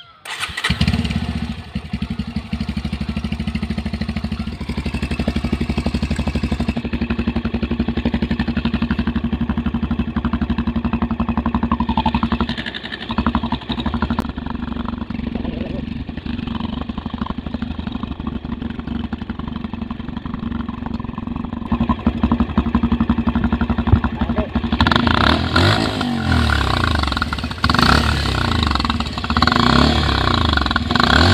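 Bajaj Pulsar 150 motorcycle's single-cylinder engine starting up about half a second in and idling steadily, then revved several times in the last few seconds, each rev rising and falling in pitch.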